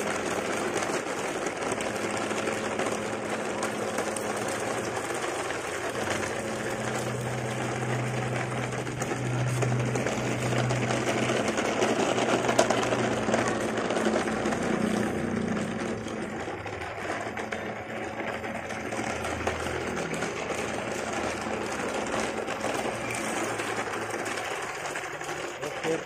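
Plastic toy dump trucks tied in a line, dragged by a string over gravel and concrete, their wheels and bodies rattling steadily, with a low hum for several seconds in the first half.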